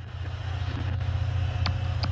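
A low, steady rumble fading in out of silence, with sharp clicks joining about one and a half seconds in and repeating several times a second: the opening sound bed of a podcast promo.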